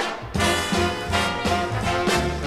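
Swing big band with brass to the fore, coming in all at once on a boogie-woogie tune and playing on in a strong, regular beat. A live concert recording played back from a vinyl LP.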